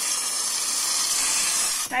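Handheld steam cleaner's point nozzle jetting steam along a tile grout line: a steady, loud hiss that cuts off near the end.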